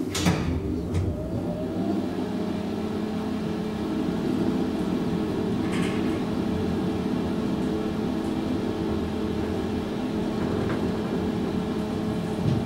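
Hydraulic elevator running, heard from inside the car: a steady low machine hum with several held tones. There is a click at the start, a short rising whine about a second in, and another click about halfway through.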